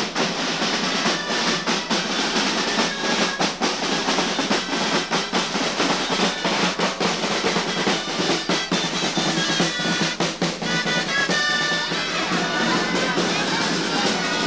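Percussion music led by a snare drum playing rapid rolls and strokes, with a pitched melody line coming in over it in the last few seconds.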